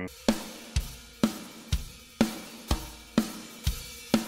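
Roland TD-17 electronic drum kit triggering EZdrummer 3 Death Metal drum samples, playing a simple steady beat. Kick and snare alternate at about two hits a second under a constant cymbal wash.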